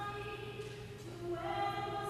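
Church choir singing slow, held notes that move in steps from one pitch to the next.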